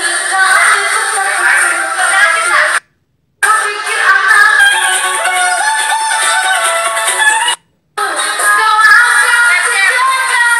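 Karaoke: women singing into a microphone over a backing track. The sound cuts out completely twice for a moment, about three seconds in and again near the eight-second mark.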